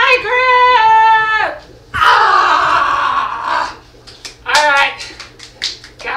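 A woman's drawn-out wavering cry, then a loud noisy stretch of about a second and a half that starts suddenly, then short bursts of laughter.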